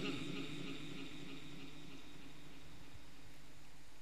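A pause in a Quran recitation heard through a loudspeaker system. The echo of the reciter's last wavering note fades away over the first second or so, leaving only a steady low hum.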